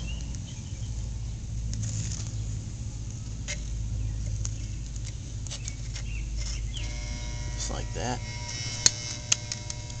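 A metal skimming tool stirring molten lead in a Lee electric lead pot, giving a few light clicks and scrapes against the pot over a steady low rumble. Near the end a steady tone with several pitches comes in.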